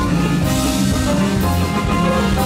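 Loud dance music with sustained instrument notes and a steady beat, a bright splash in the highs about once a second.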